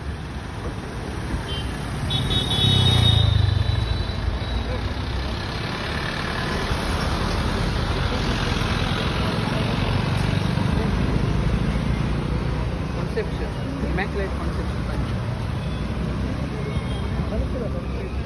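Road traffic with cars passing, a horn sounding briefly about two to three seconds in, and people's voices mixed in.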